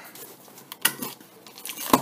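A cardboard shipping box being handled and worked open by hand: a few short knocks and scrapes of cardboard, the loudest just before the end.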